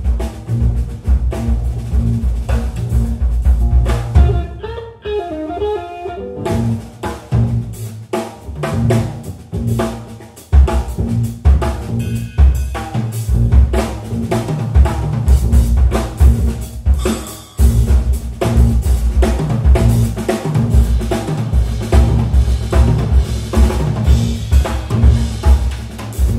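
Electric guitar, electric bass and drum kit playing a jazz-funk groove live, with the kick drum and snare prominent. The drums drop out for about two seconds early on, then return, and the full band comes back in hard about ten seconds in.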